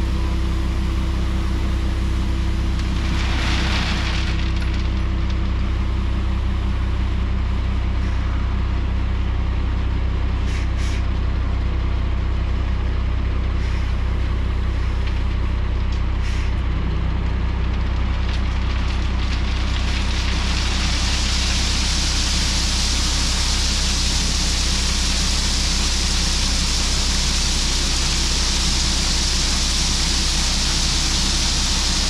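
Scania R380 truck's diesel engine running steadily while the Schwarzmüller tipper body is raised hydraulically, with a short hiss about three seconds in. From about twenty seconds in, a growing rushing hiss joins it as the aggregate load starts to slide out of the tipping body.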